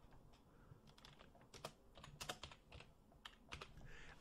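Faint, irregular keystrokes on a computer keyboard as text is typed.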